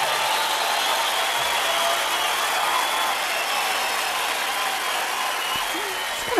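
A steady rushing noise that starts abruptly and holds an even level, with faint high tones running through it.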